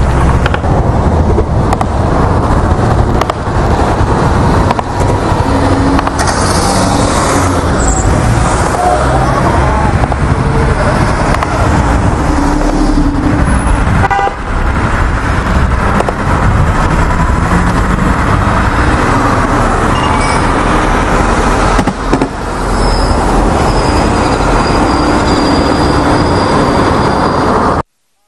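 Loud, continuous street noise from a crowd at night, with car horns honking repeatedly and voices mixed in. A thin high tone sounds near the end, then everything cuts off abruptly.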